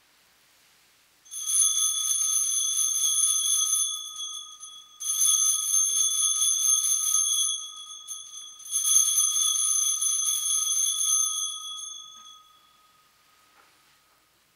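Altar bells rung in three long peals of about two to three seconds each, with short gaps between. The ringing marks the elevation of the consecrated host.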